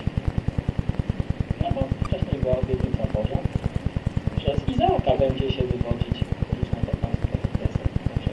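A voice speaking indistinctly over a rapid, regular low thumping pulse, about nine beats a second, running under it without a break.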